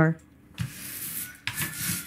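Rubbing, rustling noise in two stretches of about a second each, the first starting about half a second in and the second about a second later.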